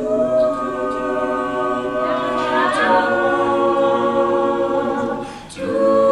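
Mixed-voice a cappella group singing held chords, with one voice sliding upward about two seconds in. The chord breaks off briefly about five and a half seconds in before the next one comes in.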